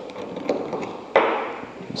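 Small metal top nut being unscrewed by hand from a solenoid valve's operator tube, with faint light clicks. Just over a second in there is a sharper knock, fading over most of a second, as the nut is set down on the table.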